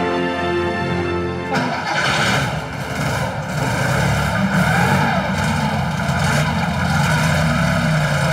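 An early Porsche 911's air-cooled flat-six engine starts suddenly about a second and a half in and keeps running, inside an indoor hall, over background music.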